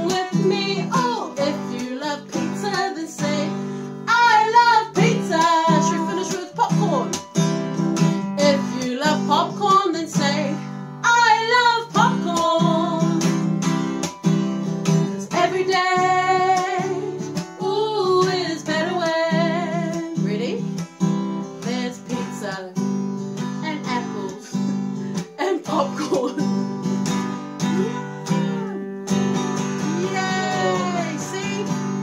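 Women singing a children's song to a strummed acoustic guitar, the singing melody wavering above steady chords.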